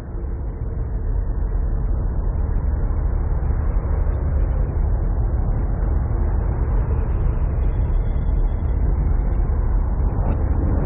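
Harsh noise / dark ambient track playing back: a dense, bass-heavy wall of noise with a hiss above it, swelling over the first second and then holding steady, with a faint high tone about eight seconds in.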